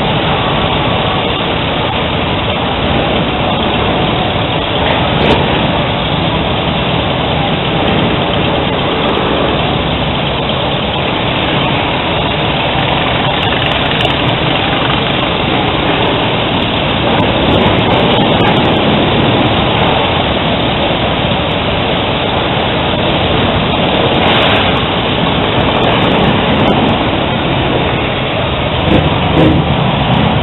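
Steady, loud motorcycle traffic on a street, with engines running.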